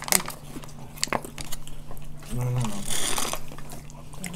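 Table sounds during a meal: a few sharp clicks and knocks of cutlery and dishes, a short hum of a voice about two and a half seconds in, and a brief crinkly rustle near three seconds as a foil drink pouch is squeezed and sucked empty.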